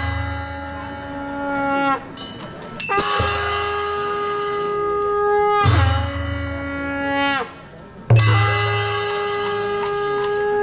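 Traditional Newar festival music: a wind instrument with a horn-like sound plays long held notes, about four in all, each lasting around two seconds and sagging downward in pitch as it ends. Low drum thuds come at the start of several notes.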